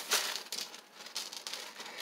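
Faint rustling and light handling knocks from a plastic shopping bag and a plastic storage box being handled.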